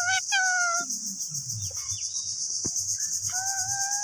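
A steady, high, pulsing chirr of insects, with clear, tuneful held notes over it: a few short ones at the start and one long, even note from near the end.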